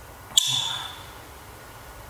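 A single sudden high ping about half a second in: a sharp click followed by one clear high tone that rings and fades within about half a second.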